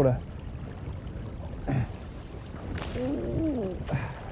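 Steady low rush of wind and shallow river water around a wading angler, with a brief voice sound near the end.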